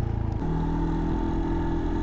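Brixton Rayburn motorcycle's single-cylinder engine running steadily at low revs as the bike rolls slowly, its note shifting slightly about half a second in.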